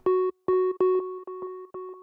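Serum soft-synth patch of two analog sine oscillators, the second an octave up and FM'd to give more harmonics, playing the same note over and over in short hits, the first few loudest.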